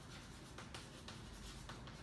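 Chalk writing on a chalkboard: faint scratching with scattered small taps as the chalk strokes and lifts off the board.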